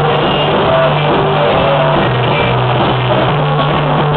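A small live rock band plays loudly and steadily, with electric guitars and a drum kit.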